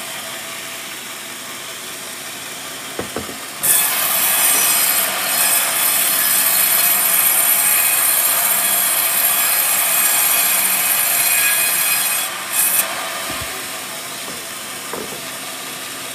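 Band sawmill running, its blade cutting through a teak board: a loud, hissing saw cut starts suddenly about four seconds in and lasts about eight seconds, with the machine running more quietly before and after the cut.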